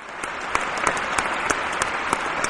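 Recorded audience applause, a canned sound effect: a steady wash of clapping with individual claps standing out.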